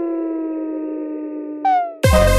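Intro of an electronic remix track: a single sustained synthesizer tone sliding slowly down in pitch like a siren winding down, over a soft hiss. Near the end a second, higher tone cuts in and falls.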